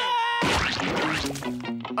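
Cartoon soundtrack: a held musical chord cut off by a sharp whack sound effect about half a second in, followed by falling glides and a short run of stepped musical notes.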